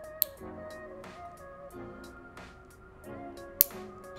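Two sharp snips of a stainless steel nail clipper cutting through a fingernail tip, one just after the start and one near the end, over soft background music with plucked tones.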